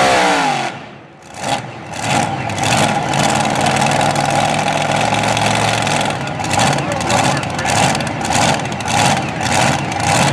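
A mini modified pulling tractor's supercharged engine coming off full throttle at the end of a pull, its pitch falling away over about a second, then running on at a low, uneven idle.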